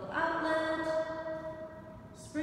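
A person's voice holding a long sung or hummed note, stepping slightly lower about a second in, then fading out.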